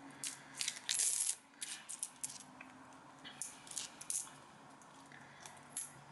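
Copper one-penny coins clinking together as they are picked up and tossed into a cupped hand: a quick scatter of light clinks, busiest in the first couple of seconds and sparser after.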